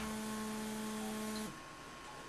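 A sustained musical note, the held tail of a struck chord, that stays level and cuts off suddenly about one and a half seconds in, leaving a faint hum.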